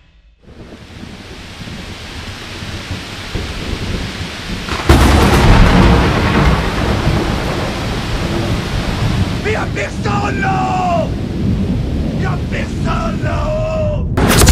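Thunderstorm: steady rain builds up, then a loud thunderclap breaks about five seconds in and rumbles on under the rain. A few short wavering pitched sounds come over it in the second half.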